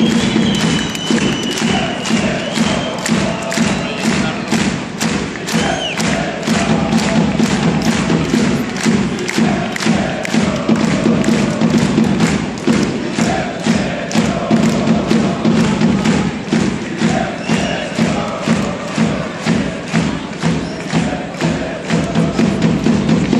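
Loud boxing-arena crowd din with a steady rhythmic thumping, about two beats a second, under a mass of crowd voices.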